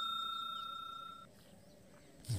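Fading tail of a bell-like 'ding' sound effect from a subscribe-button animation: a high ring that dies away and stops about a second and a quarter in.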